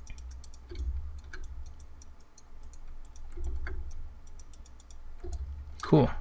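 Faint, scattered clicks of a computer mouse and keyboard while the brush tool is being worked, over a low rumble that comes and goes.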